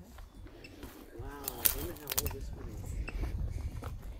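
Faint, indistinct voices of people talking a little way off, with a sharp click about a second and a half in and a low rumble of movement against the handheld microphone.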